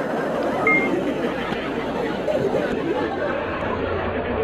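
Overlapping chatter of many voices, with no single voice or words standing out, and a brief high beep about two-thirds of a second in.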